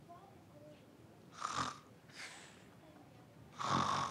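A person sighing heavily twice, once about a second and a half in and again near the end, with a fainter breath between: bored, drawn-out exhales.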